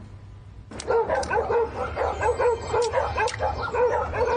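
Dogs barking and yapping in quick succession, starting just under a second in and keeping on without a break.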